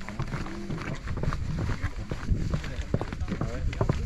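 Footsteps walking down a wooden ramp covered in rubber matting, a run of irregular steps and knocks, with voices talking in the background.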